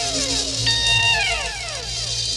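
Live progressive rock music taken straight from the mixing desk, with the bass guitar missing: held high notes that slide steeply down in pitch, a new one struck about two-thirds of a second in and bent downward, over a steady low hum.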